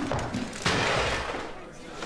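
A sudden loud burst of noise about two-thirds of a second in, fading over the next second, from a TV advert's soundtrack.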